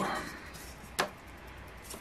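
A single sharp tap on a wooden tabletop about a second in, amid quiet handling.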